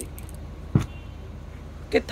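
Cloth being unfolded and handled on a pile of fabric: a low, soft rustle over a steady background hum, with one short thud a little before the middle.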